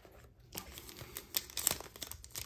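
Foil wrapper of a Panini Illusions basketball trading-card pack crinkling and tearing as it is handled and ripped open. The sharp crackles start about half a second in, with the loudest snaps near the end.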